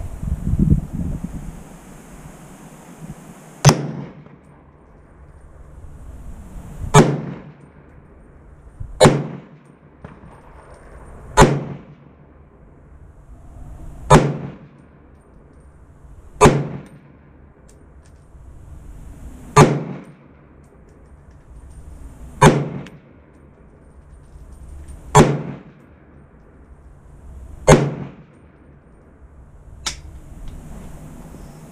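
Ruger SFAR .308 semi-automatic rifle firing ten shots, one every two to three seconds, each a sharp crack with a ringing tail. The action cycles every round on gas setting 2.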